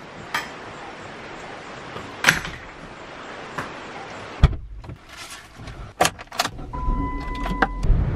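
Steady rain falling, with a few light clicks. About halfway through, a car door shuts with a thump and a low car rumble starts, followed by clicks and knocks of keys and handling in the car. A steady electronic warning chime tone from the car sounds near the end.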